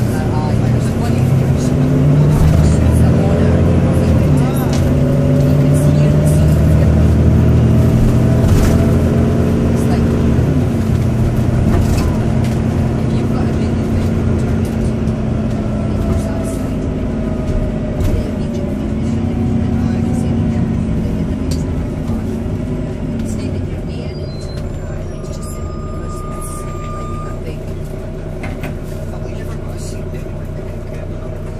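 Volvo B9TL double-decker bus's six-cylinder diesel engine and drivetrain heard from the upper deck while the bus is moving. The pitch rises and drops back several times as it accelerates, then it gets quieter in the last few seconds.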